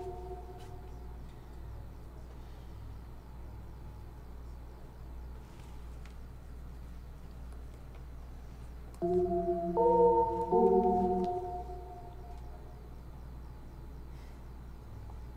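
Sustained, organ-like synth chords from a Native Instruments Massive patch triggered in Maschine: a chord fading out at the start, then after a stretch of low steady hum, three held chords in a row, about nine seconds in, that fade away.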